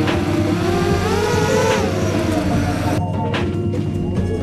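Background music with a regular drum beat over a small motor whose pitch rises about a second in and falls back again. The motor sound cuts off abruptly about three seconds in, leaving the music.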